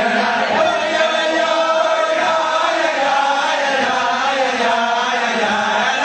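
A group of voices singing a chant-like melody together, without a break.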